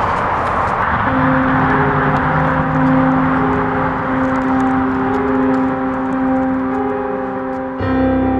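Street ambience with traffic hiss, then about a second in a low, sustained chord of background music comes in and holds; piano music enters right at the end.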